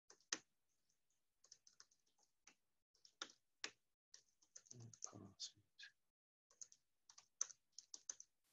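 Quiet typing on a computer keyboard: irregular runs of short key clicks as a terminal command is entered.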